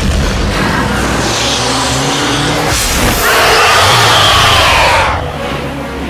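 Action-film soundtrack: a car racing with its tyres squealing, over a dense mix of crashes and music. A loud, high screech is strongest for about two seconds in the second half.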